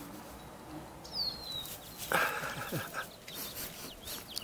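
A short animal call, just under a second long, about two seconds in, after a brief high falling whistle about a second in, with rustling through the second half.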